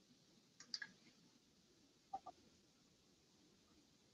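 Near silence on a video-call audio feed, broken by a few faint short clicks: a pair about two-thirds of a second in and another pair about two seconds in.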